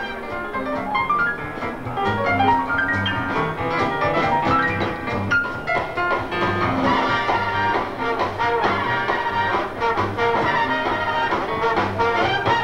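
Swing big band playing live: saxophones, trombones and trumpets over walking upright bass, drums and piano, with climbing runs of notes in the first few seconds.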